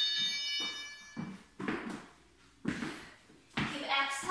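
An electronic interval-timer buzzer sounds a high, steady tone for about a second and a half at the start, marking the start of a 45-second work interval. Several short, softer noises follow.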